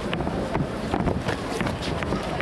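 Boxing sparring: several short, sharp knocks and scuffs from gloves and feet on the ring canvas, over a steady background of voices.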